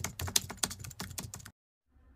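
Computer-keyboard typing sound effect: a quick run of sharp key clicks, several a second, stopping suddenly about one and a half seconds in.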